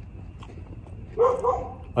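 A dog crying: two short, high-pitched whines close together a little past one second in.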